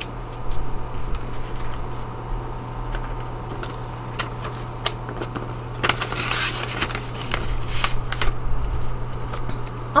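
Paper banknotes and envelopes being handled: scattered short crisp clicks and crinkles, with a denser burst of rustling about six seconds in.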